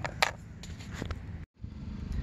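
Quiet outdoor background noise with a few light handling clicks, the sharpest just after the start. About one and a half seconds in, the sound drops out completely for an instant at an edit cut.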